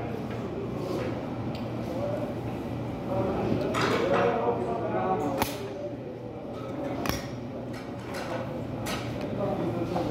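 Restaurant room sound: indistinct voices in the background over a steady low hum, with a few sharp clicks in the second half.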